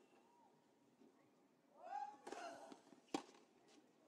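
Quiet court ambience between tennis points. A voice calls out once about halfway through, then a single sharp knock of a tennis ball comes just after three seconds.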